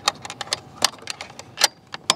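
Metal clicks and light rattling from a quick-release slide mount's latch as it is worked by hand, with two louder sharp clicks about a second apart.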